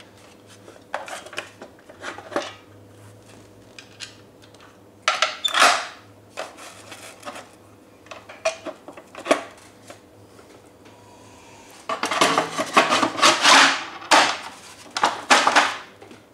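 Hard plastic and metal parts of a power wheelchair's backrest and armrests being handled: scattered knocks, clicks and short rattles, with a denser run of clattering near the end.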